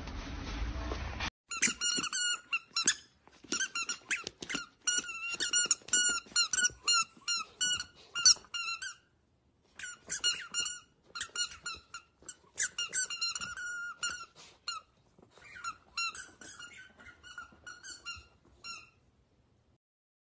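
Squeaky dog toy squeaking over and over as a corgi puppy chews it: runs of short, same-pitched squeaks in quick succession, with brief pauses, stopping a second before the end.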